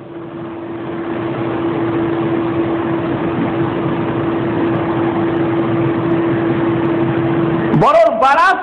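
Steady rushing noise with a constant low hum under it, which stops just before speech resumes.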